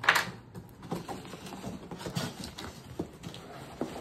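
Cardboard shipping box being opened by hand: a short, loud ripping sound right at the start, then scattered scrapes, taps and rustles of the cardboard flaps being worked open.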